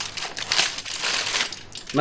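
Aluminium foil crinkling and rustling as it is unwrapped and crumpled by hand.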